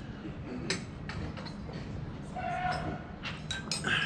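Quiet ambience with a steady low hum and a few light clinks of dishes and cutlery being handled, one a little under a second in and a cluster near the end.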